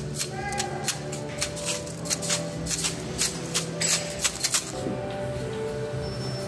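Irregular clicking and clattering of the pins of a large pin-art wall as they are pushed in and slide, over background music.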